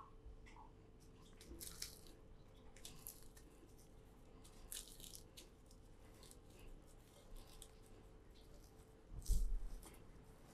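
Faint crackling of fried dried red chilies being crumbled by hand, in a few short bursts, with a low thump near the end.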